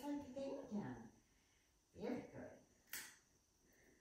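A woman's soft voice talking to a dog, in the first second and again about two seconds in, with a single sharp click about three seconds in.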